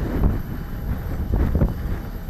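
Low, steady rumble of outdoor airport-apron noise on a live field microphone, with a little wind on the microphone.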